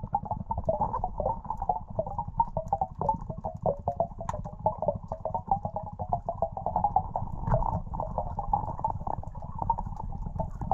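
Muffled underwater gurgling and crackling with a low rumble, heard through a GoPro's waterproof housing.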